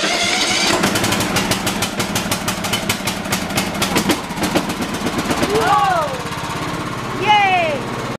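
Riding lawn mower engine running loud, just after starting, with a rapid rattling beat over a steady drone. A voice calls out twice in the second half.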